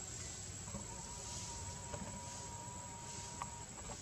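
Forest insects droning: a steady high-pitched whine, with a hiss above it that swells and fades several times. A single lower steady tone comes in about a second in and holds for about three seconds.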